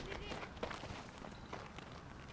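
Faint scuffing steps on infield dirt as a softball catcher in gear rises out of her crouch and moves around home plate, with small scattered ticks and no loud event.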